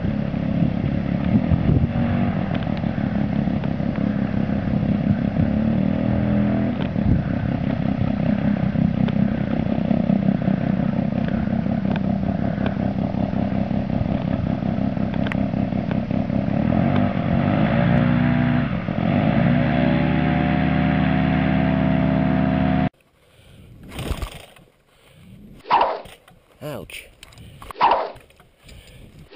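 Paramotor engine running steadily, its pitch sliding up and down in the last few seconds before it cuts off abruptly; a few short separate sounds follow.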